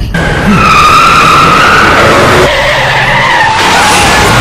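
Car tyres screeching in a long, loud skid: a high squeal that wavers and sinks in pitch near the end.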